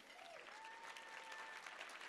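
Faint audience applause, a spread of scattered claps.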